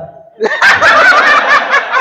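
A loud burst of laughter that breaks out about half a second in, in quick repeated pulses.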